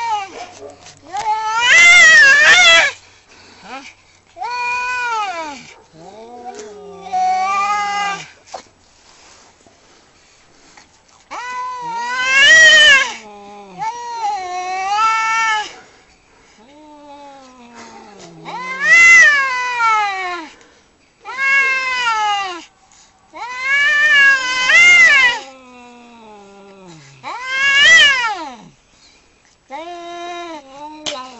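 Two domestic cats caterwauling at each other in a fight standoff: a string of long, wavering yowls that rise and fall in pitch, one after another with short pauses between.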